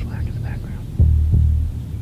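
A heartbeat-and-drone sound effect: a steady low hum with a double 'lub-dub' thump about a second in.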